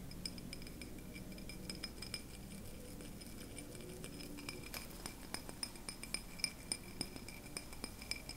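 Quiet light taps and clinks on a glass candle holder handled up close, the small sharp clicks coming more often in the second half. A faint steady high tone runs underneath.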